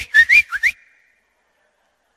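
A person whistling three quick notes, each one rising in pitch, all within the first second.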